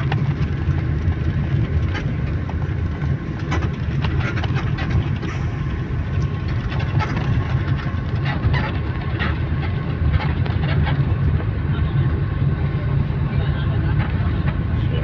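Steady low rumble of a moving bus's engine and tyres on the expressway, heard from inside the passenger cabin, with scattered light clicks and rattles.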